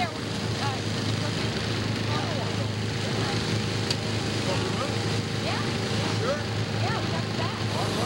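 Steady rushing noise with scattered faint voices calling.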